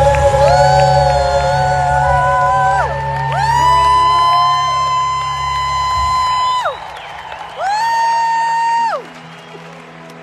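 Live worship music amplified through an arena PA, heard through a phone microphone: a melody of long held notes, each sliding up into pitch, over bass and drums, with the crowd cheering. The bass and drums drop out about six seconds in, and the music falls quieter near the end.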